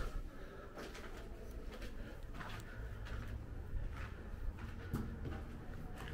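Slow footsteps scuffing and crunching on a gritty, debris-strewn concrete floor, a few soft steps spaced about a second or more apart over a low steady rumble.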